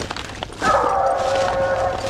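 Treeing Walker coonhound bawling at the tree: one long drawn-out note beginning about half a second in and held past the end, over a steady low hum.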